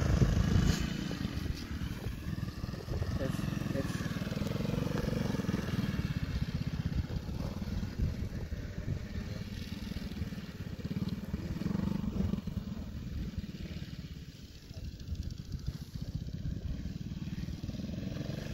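Dirt bike engine running and revving as the rider crosses rough obstacles, its pitch rising and falling with the throttle. It is loudest near the start and eases off for a moment about two-thirds of the way through.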